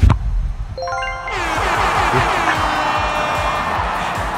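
A soccer ball struck with a sharp thump, then, under a second later, a quick rising run of chime notes bursting into a bright, sustained jingling win sound effect over background music with a beat.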